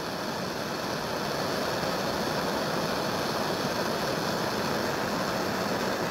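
Handheld gas blowtorch burning with a steady hiss, its flame playing on a small anodized aluminum trigger part.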